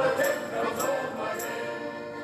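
A sea shanty sung by a choir with instrumental accompaniment, a crisp high tap on each beat about every 0.6 s, fading out steadily.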